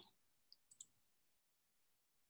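Near silence, with three faint, short clicks in the first second: computer clicks advancing a presentation slide.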